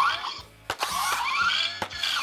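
Electronic sci-fi power-up sound effect, the Iron Man helmet's combat-mode activation: a short rising sweep, a click, then a longer run of rising electronic sweeps with another click near the end.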